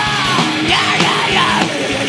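Heavy metal band playing live: distorted electric guitars and drums at a fast, steady beat, with harsh shouted vocals over them.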